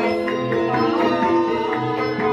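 Javanese gamelan ensemble playing a ladrang. Bronze keyed metallophones ring in layered sustained notes over regular kendang drum strokes.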